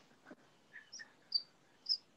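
A few short, high chirps, like a small bird calling, heard faintly over a participant's open microphone on a video call, the last two the loudest.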